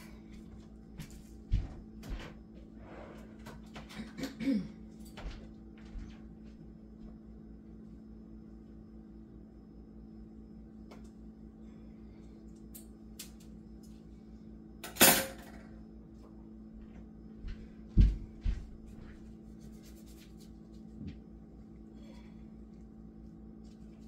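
Handling noises from working on a small plastic pigment bottle with a clogged tip: scattered light clicks and taps, a brief louder rasp about fifteen seconds in, and two knocks about three seconds later. A steady low electrical hum runs underneath.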